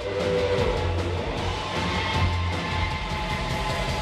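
Live rock trio of electric guitar, bass and drums playing an instrumental passage, loud, with long held notes ringing over a steady bass and drum beat.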